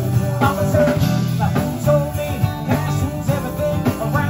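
Live band playing a groove with no lead vocal line: strummed acoustic guitars and electric bass over drums.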